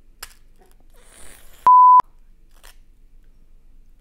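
A short, loud single-pitch censor bleep of about a third of a second, a little before halfway, laid over a mishap while a graham cracker is snapped by hand. There are faint sharp snaps from the cracker before and after it.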